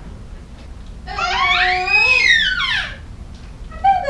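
A young baby's drawn-out, high-pitched fussing cry, rising and then falling over about two seconds, followed by a shorter falling cry at the very end.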